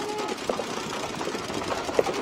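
Several paintball markers firing rapidly at once, a dense, steady rattle of shots.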